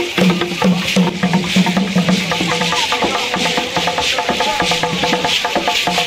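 Traditional Kougang dance music played live: rapid, dense clicking percussion over a steady rattling hiss. A low sustained tone runs underneath and drops out about halfway through.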